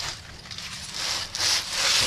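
Aluminium foil crinkling and rubbing as a foil-wrapped packet is handled and set down on a charcoal grill grate, in a few rustling swells that grow louder after about a second.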